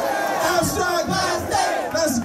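Concert crowd in a packed club shouting together, many voices at once at a steady loud level.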